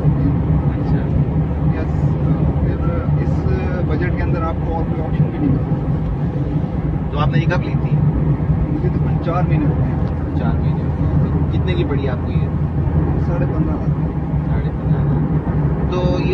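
Steady engine and road drone inside the cabin of a Toyota Vitz 1.0, its three-cylinder engine pulling the car along at road speed, with faint talk under it.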